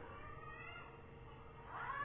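Quiet room tone with a faint steady hum; in the last half-second a short, faint rising cry.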